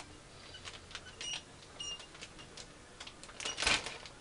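Plastic model-kit parts and their bags being handled and sorted: light scattered clicks and crinkles, with a louder rustle about three and a half seconds in.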